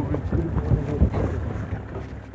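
Wind buffeting the microphone in irregular low rumbles, loudest about a second in.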